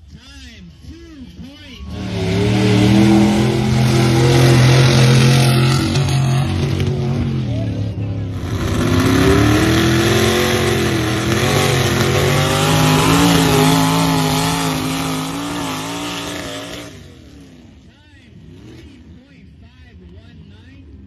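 Mud-race vehicle engines run hard at full throttle in two passes: the first starts about two seconds in and drops near eight seconds, and the second rises and falls in pitch as it revs, ending about seventeen seconds in.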